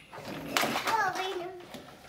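A toddler's wordless voice: one drawn-out sound that falls in pitch and then holds. A short knock comes just before it, about half a second in.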